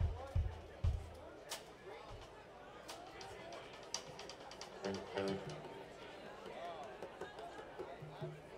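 Between songs on a live stage: a few short low notes plucked on the bass guitar in the first two seconds, another low note about five seconds in, scattered clicks and taps from the stage, and faint talk from the crowd.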